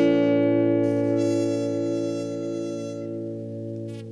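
The song's final chord on guitar and harmonica, struck once and held, slowly fading.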